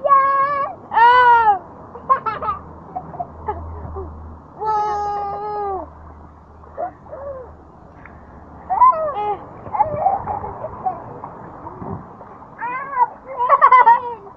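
Young girls' high-pitched wordless vocalizing: squeals and drawn-out cries. There are several short ones near the start, a longer held one about five seconds in, and more bursts near the end.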